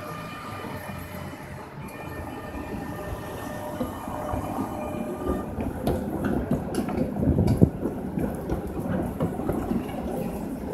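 Trams rolling across a track junction, their wheels clattering over the rail crossings. The rumble grows from about four seconds in and is loudest about three-quarters of the way through, with sharp clicks and knocks.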